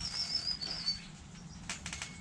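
A small bird's high, wavering chirp for about the first second, with the rustle of a hen's feathers close to the microphone and a few sharp ticks near the end.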